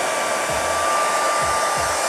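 Handheld hair dryer blowing steadily, a constant rush of air with a faint steady whine in it.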